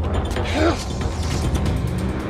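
Mechanical clicking of a car door handle and latch being worked, over a low, steady film score.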